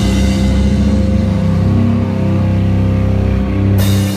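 Rock band playing live: distorted electric guitars and bass hold long droning notes with the drums out. Drums and cymbals crash back in just before the end.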